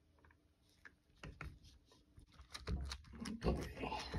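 Scattered soft clicks, knocks and low bumps of handling as a metal spoon and gloved fingers press crumbly beeswax soap into a silicone mold, starting about a second in and busiest a little before the end.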